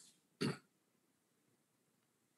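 A person clearing their throat once, briefly, about half a second in.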